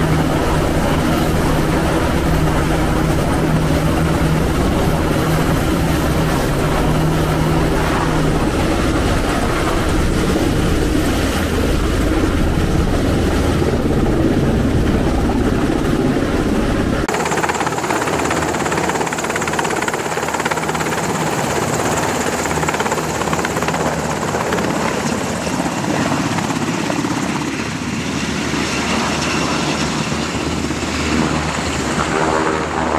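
MH-60S Nighthawk helicopter's twin turboshaft engines and rotor running steadily as it hovers with a sling load. About halfway through the sound changes abruptly: the deep low rumble drops away and a high steady whine comes in.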